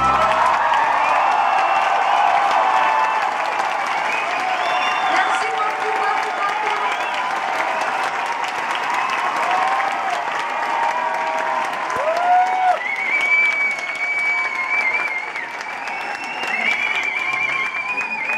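A live concert audience applauding and cheering after a piano song ends, with shouts and a few long whistles in the second half.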